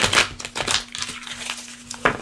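Cards being shuffled by hand off-camera: a quick run of papery rustles and flicks, with a faint steady hum beneath.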